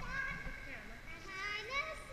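A young girl's high voice speaking or calling out, with a rising call about one and a half seconds in.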